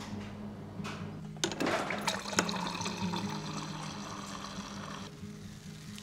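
Water from a fridge's door dispenser running into a glass for about four seconds, starting with a few clicks and then pouring steadily before it cuts off. Soft background music runs underneath.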